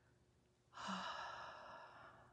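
A woman sighing: one long breath out, starting about a second in, loudest at its start and fading away.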